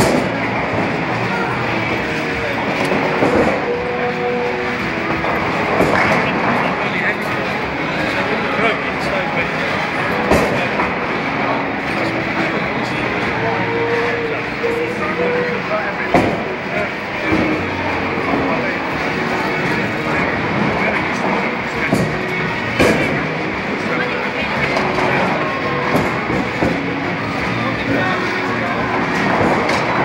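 Busy bowling alley din: a steady wash of chatter and background music, broken by scattered sharp knocks and crashes from balls and pins.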